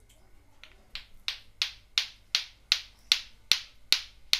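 Lato-lato clackers: two plastic balls on strings knocking together in a steady rhythm of about three sharp clacks a second, faint at first and loud from about a second in.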